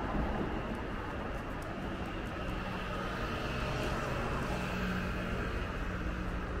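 Steady road traffic noise with a vehicle engine hum that grows a little stronger in the second half.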